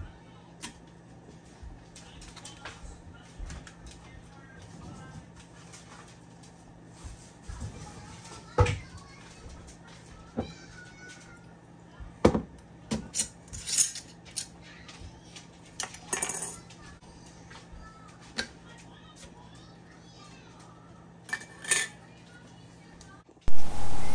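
Scattered clinks and clatters of utensils and chicken pieces against an Instant Pot's stainless-steel inner pot as chicken is put in, separate knocks with pauses between and a couple of brief rustles in the middle.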